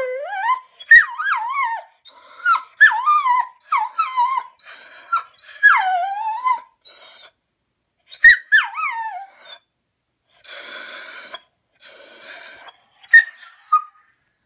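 Dog whining and yowling in a string of short, high cries that slide down in pitch, one after another, then a couple of breathy huffs and a last short whine near the end.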